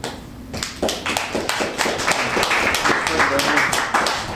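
Small audience applauding: many scattered hand claps that build up about half a second in and carry on densely, with voices faintly underneath.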